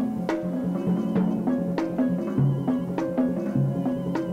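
Drum kit played live with sticks: toms struck in a melodic pattern of changing pitches, with sharp stick accents, over a steady sustained drone.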